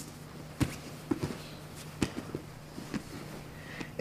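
Scattered soft thumps and rustles of two grapplers' bodies, knees and cotton gis shifting on a foam training mat, over a low steady hum.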